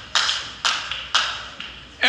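Hand claps in a slow, steady rhythm, about two a second, each with a short echo.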